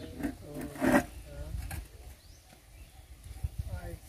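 Short, indistinct vocal sounds from people, with no clear words, over a steady low rumble.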